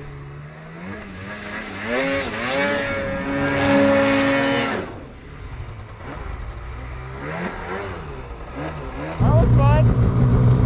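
Snowmobile engines. About two seconds in, one sled revs up and holds a high steady pitch for a couple of seconds, then drops away. Near the end a much louder snowmobile engine close by cuts in suddenly, running at a steady low pitch.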